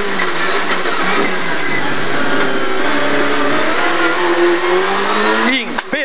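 Citroën Saxo rally car's engine heard from inside the cabin, pulling hard under load with the revs holding and climbing in third gear. Shortly before the end the engine note falls away as the car comes off the throttle and shifts down to second.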